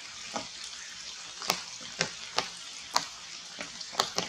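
Steady hiss of light rain on forest leaves, broken by irregular sharp ticks. A louder crack of branches comes at the very end as a monkey leaps through the tree.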